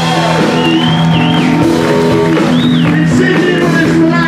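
Live electric blues-rock band playing: electric guitar, keyboards, bass and drums over a held chord, with two high bending notes on top.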